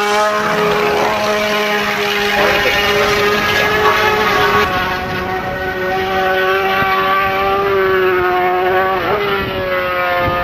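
Ducati Desmosedici MotoGP prototype's 990 cc V4 engine running at high revs, its pitch holding fairly steady with small rises and falls and a brief dip about nine seconds in.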